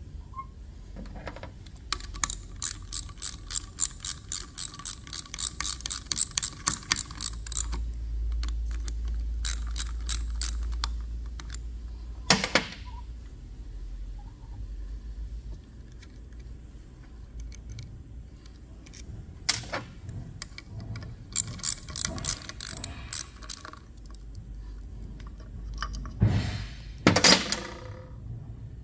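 Metal parts of a Danfoss Series 90 hydraulic pump's charge-pump assembly clicking in quick runs of several clicks a second as they are twisted by hand to line them up. There are a couple of single sharp knocks midway and a louder rattling scrape near the end.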